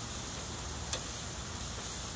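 Meat sizzling steadily on a gas grill, with a single sharp click of metal tongs against the grate about a second in.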